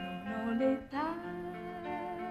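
A young woman singing a slow ballad with orchestral accompaniment, a plucked guitar among it. About a second in she slides up into a long held note.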